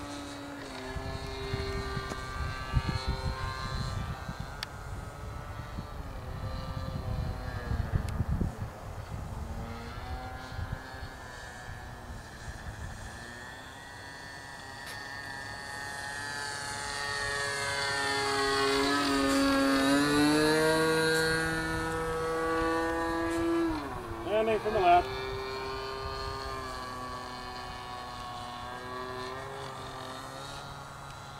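Droning aircraft engine whose pitch slowly rises and falls, growing louder as it passes overhead about two-thirds of the way through. Wind rumbles on the microphone in the first several seconds, and there is a short louder burst near the end.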